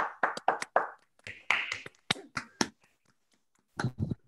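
Hand clapping heard over a video call: sharp separate claps, about five a second at first, thinning out and stopping after nearly three seconds, with a short low sound just before the end.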